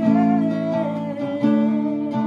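Acoustic guitar strummed in even strokes, ringing chords, changing to a new chord a little past halfway through.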